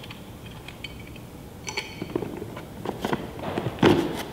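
Small plastic and metal laser accessories being handled and set into the foam pockets of a hard plastic carrying case: a few light clicks and taps, then a louder knock near the end.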